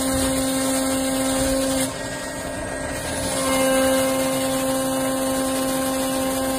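Hydraulic pump on a Harsh mixer wagon running with a steady droning whine, working the cylinders of the discharge door. The whine drops off about two seconds in and comes back strongly about a second and a half later.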